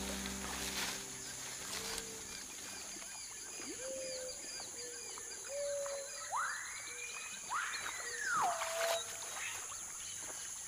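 Wild forest ambience: a steady high insect drone with rows of short, repeated animal chirps, and two long whistled calls that rise and then fall, about six and seven and a half seconds in. Soft music fades out in the first second or two.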